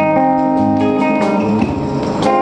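Hollow-body electric guitar playing ringing chords in an improvised jam, backed by hand drums and a small drum kit.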